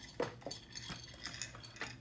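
Small hard objects clicking and clinking as they are rummaged through by hand, about five sharp clicks in two seconds.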